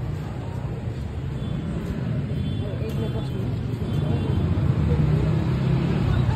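Street ambience: motor traffic with indistinct voices of people nearby, getting louder in the second half.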